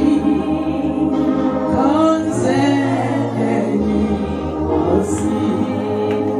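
A group of voices singing an isiXhosa gospel worship song together, over a steady low accompaniment.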